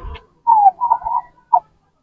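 A man's voice coming over a mobile phone's loudspeaker on a call, thin and tinny, squeezed into a narrow middle band. It is heard in a short burst about half a second in, with a brief blip shortly after.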